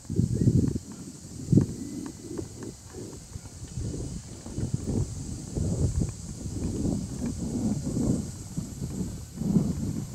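Footsteps of someone walking on a paved street, irregular short knocks over low, uneven rumbling.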